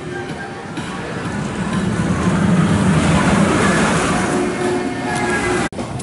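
Zamperla Disk'O ride running: the spinning gondola rolling along its U-shaped track, the noise swelling to a peak partway through and then easing as it swings past. The sound cuts off abruptly near the end.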